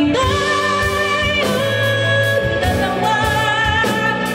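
A woman singing a ballad live into a microphone with a band behind her, holding long notes one after another, each slid up into at its start.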